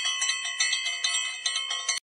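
Church bells ringing, struck rapidly about four times a second over a steady high ringing that cuts off suddenly near the end.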